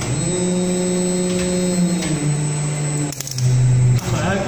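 Servo-motor-driven hydraulic pump of a Haitian MA2000 200-ton injection molding machine running under load: a steady whine that steps down in pitch about two seconds in and again about three seconds in, with a brief dip just before the second step.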